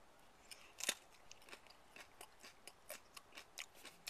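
Faint crisp crunching of a raw Habanero Tabaquite pepper being bitten and chewed: irregular short clicks, the loudest about a second in.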